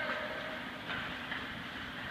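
Indoor ice rink ambience during play: a steady wash of noise from skates on the ice and the arena, with faint distant voices near the start.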